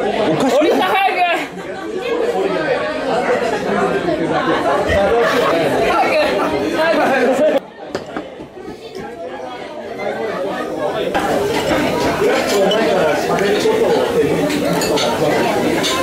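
Many voices talking at once: the chatter of a crowded restaurant. It drops suddenly about seven and a half seconds in, then builds back up.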